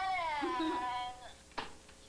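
A single long meow, high-pitched and slowly falling in pitch, lasting about a second and a half, followed by a sharp click.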